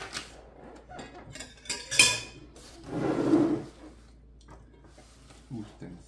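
Breakfast-table sounds: cutlery knocking against china plates in short clicks, the loudest about two seconds in, followed by a scraping sound lasting about a second, like a knife spreading butter across bread.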